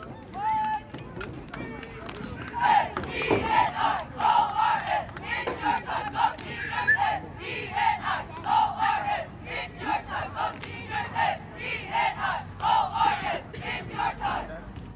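Cheerleading squad shouting a cheer in unison, in short rhythmic shouted phrases that start about two seconds in.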